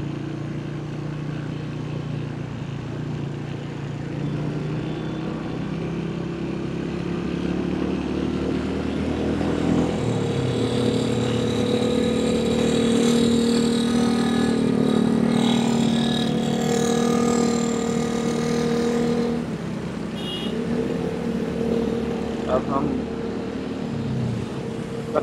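Motorcycle engine running in city traffic. Its pitch climbs about ten seconds in and drops back near twenty seconds.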